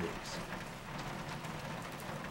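Steady rain falling: an even, hissing storm ambience.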